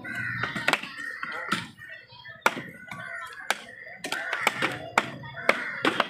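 Heavy knife chopping through a paarai (trevally) on a wooden log block: about a dozen sharp, irregularly spaced chops, with voices in the background.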